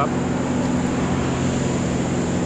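A steady engine drone at a constant pitch, with no revving.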